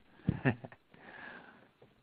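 A man's short breathy laugh: two quick puffs of breath through the nose, then fainter breathing.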